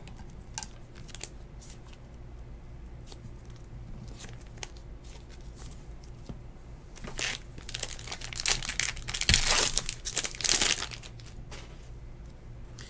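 Foil trading-card pack being torn open and its wrapper crinkled, loudest from about seven to eleven seconds in. Before that, a few light taps of cards being handled and set down.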